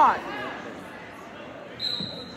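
Murmur of a gymnasium crowd as a spectator's shout of "pod!" fades out. Near the end comes a brief, steady high-pitched whistle blast.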